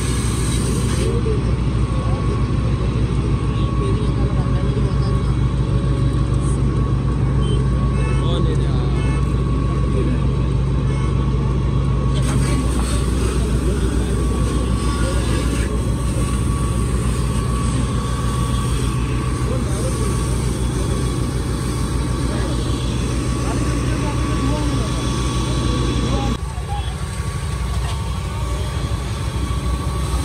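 A vehicle engine idling with a steady low hum under indistinct voices. About 26 seconds in, part of the hum drops away and the sound thins.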